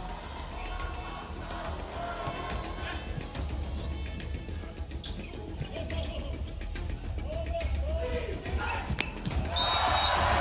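Volleyball match in a large indoor arena: a volleyball is bounced on the court before the serve, with a few sharp ball strikes during the rally. Steady crowd noise swells into loud cheering near the end as the point is won.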